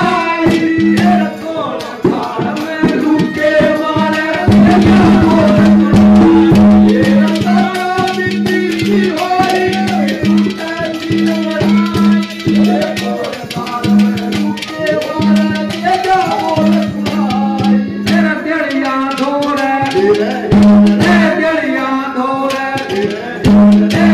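Live Haryanvi ragni folk music: a man singing into a microphone over drums and rattling percussion.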